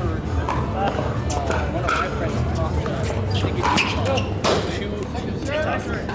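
Sharp pops of pickleball paddles striking a hard plastic ball and the ball bouncing on a hard court, irregularly spaced, the loudest a little after four seconds in.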